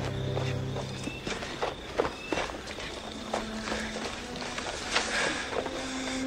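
Footsteps, a string of uneven steps, with a low held musical note underneath that fades out after about a second.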